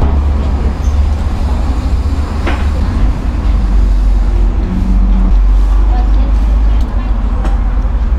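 Loud, steady low rumble of outdoor background noise, with a short hum about five seconds in.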